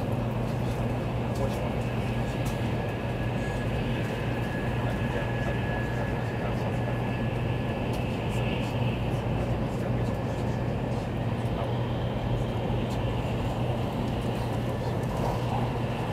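Cabin noise of a Taiwan High Speed Rail 700T electric train running at speed, heard from inside the passenger car: a steady rumble with a low hum and a faint, thin high whine.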